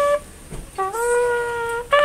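Trumpet playing solo: a phrase's note ends, there is a short breath, then one long held note that scoops up slightly into pitch before a higher note starts near the end.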